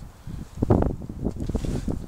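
Wind buffeting the microphone in uneven low rumbling gusts.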